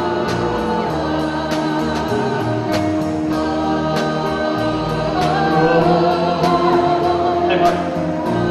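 Live band playing a slow song, with backing singers holding choir-like harmonies over a regular beat about once a second.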